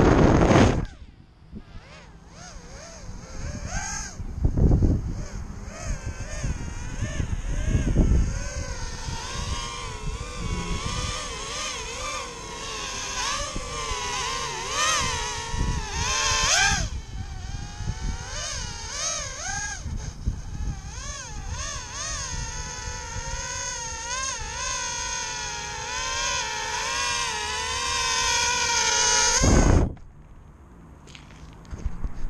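A micro 113 mm quadcopter's Racerstar 1306 brushless motors on a 3S battery spin up and fly overhead. They make a buzzing whine of several tones that wavers constantly up and down in pitch with the throttle. A few loud low rumbles come in the first eight seconds.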